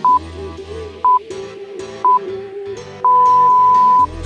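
Workout interval timer counting down: three short beeps a second apart, then one long beep about three seconds in marking the end of the work interval and the start of rest. Background music plays underneath.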